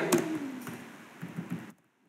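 A spoken word trailing off, then a few faint laptop keyboard key clicks as text is typed.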